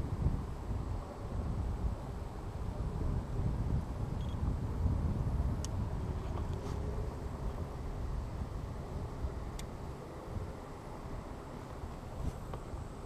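Wind buffeting an action camera's microphone, a gusty low rumble that rises and falls, with two or three faint clicks.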